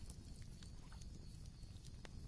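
Very quiet pause: a faint low hum with a few faint ticks.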